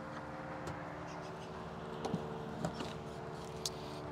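Steady electrical hum from a DC fast-charging station, with a few faint, sharp clicks from a CCS charging plug and CCS-to-NACS adapter being seated in a Tesla's charge port.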